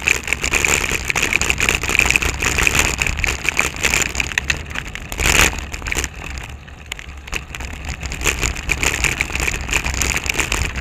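Road noise picked up by a bicycle-mounted camera while riding: a dense crackling rattle over a low rumble as the bike rolls over rough pavement. There is one louder burst about five seconds in.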